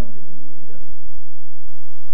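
A man's drawn-out, sung phrase trails off at the start. A steady low hum runs underneath, with only a faint voice in the pause that follows.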